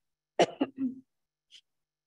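A person clearing their throat once at a microphone: a short, sharp rasp about half a second in.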